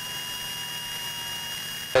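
Steady cockpit noise in a light single-engine aircraft in flight: a low engine hum under several thin, steady high-pitched electrical whine tones.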